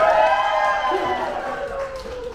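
A woman speaking into a handheld microphone, her voice amplified through the hall's sound system.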